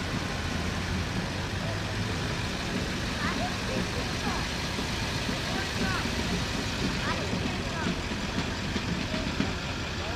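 Ambulance engine running as it rolls slowly past, a steady low drone, with voices of people in the background.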